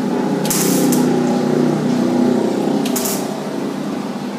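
Electric arc welding: the arc crackling and buzzing steadily as a weld bead is laid on steel, with a couple of brief hissing bursts.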